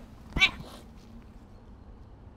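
A cat gives one short, loud meow about half a second in.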